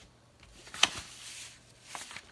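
Handling noise: one sharp click a little under a second in, followed by a brief rustle and a fainter click near the end.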